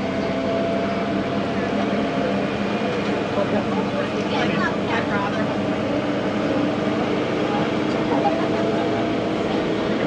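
Open-air safari tram running at a steady pace, giving a constant motor hum with a few steady tones under it.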